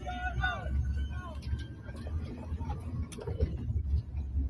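Steady low rumble of a car driving, heard from inside the cabin, with faint voices over it in the first second or so.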